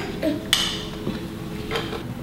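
Spoons clinking and scraping in bowls, with a sharp clink about half a second in and a lighter one near the end.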